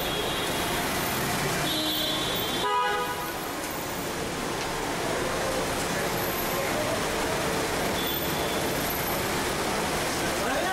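A car horn sounds briefly about three seconds in, over steady traffic and crowd noise.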